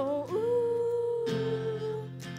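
A young singer holds one long, steady sung note over two strummed acoustic guitars, with a fresh strum about a second and a half in.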